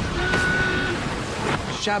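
A large rush of water as the giant tidal wave is released down the ramp, with a held tone for most of the first second.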